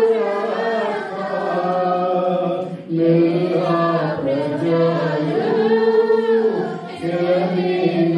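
A man singing a worship song into a microphone, in phrases of long held notes with a short break about three seconds in and another near the end.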